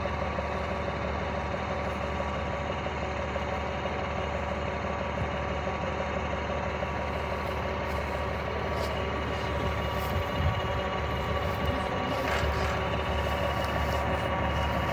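Heavy military vehicle engine idling steadily, with a few light knocks near the end.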